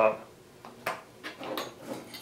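A round file being picked up and handled against metal: two sharp clicks about two-thirds of a second in, then a short rattle.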